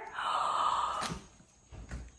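A short, breathy gasp lasting under a second, followed by a single sharp click about a second in.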